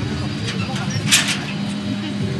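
Outdoor crowd ambience: faint background voices over a steady low hum, with a short hiss about a second in.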